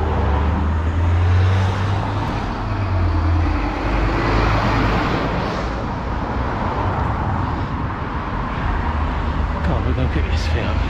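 Road traffic passing close by: a low engine rumble, strongest in the first few seconds, under steady tyre and road noise that swells about four to five seconds in as vehicles go past.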